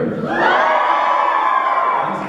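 Crowd of high-school students cheering and shouting in answer to a call of 'let me hear it'. It swells about half a second in and dies down near the end.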